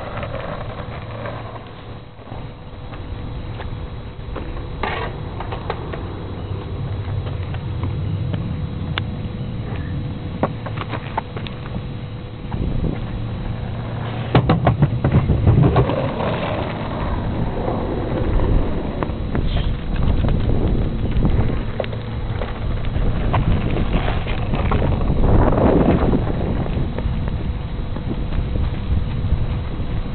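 Skateboard wheels rolling over asphalt: a steady low rumble that swells louder as a rider passes close, around the middle and again later, with a few sharp clicks and knocks from the board.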